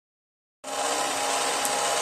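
Small electric motor and gearing of a toy conveyor-belt sushi track running with a steady whir as the plates circle, coming in about half a second in.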